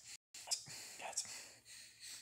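A person whispering in short, breathy syllables, with a brief total cut-out of the sound a fraction of a second in.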